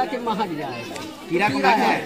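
Only speech: people talking, with voices overlapping in the background chatter of a gathered crowd.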